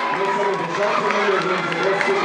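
Many children's voices chattering and calling out at once, mixed into the general hubbub of a crowd, with no single clear word.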